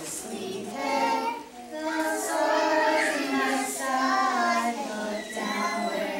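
A group of young preschool children singing a Christmas song together.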